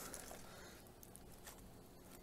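Near silence: faint background noise, with one faint tick about one and a half seconds in.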